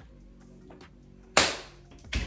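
A single sudden, sharp handling noise, a knock or crinkle, about one and a half seconds in, dying away within half a second, over faint steady low tones.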